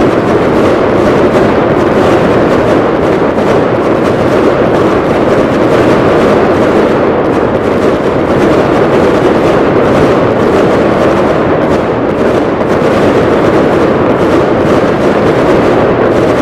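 Fireworks barrage, aerial shells bursting so densely that the bangs and crackle merge into one steady, loud rumble with no single bang standing out.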